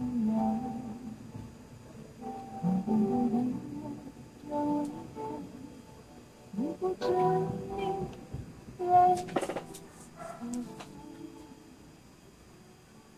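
A radio broadcast of music from a portable multiband radio, heard through its small speaker: phrases of held, pitched notes with a quick run of clicks about nine seconds in.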